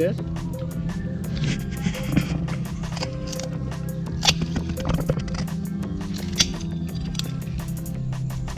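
Background music, with two sharp snips of scissors cutting through a sea hibiscus bonsai root, about four and six seconds in.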